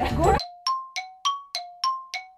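Voices over background music cut off suddenly, then a bell-like chime jingle plays: quick ringing strikes, about three a second, alternating between a lower and a higher note.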